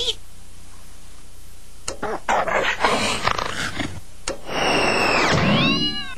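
Cartoon soundtrack: a low hum, a click, then about two seconds of animal-like vocal noise. After a second click comes a loud rushing sound effect with falling whistling tones over the last second and a half.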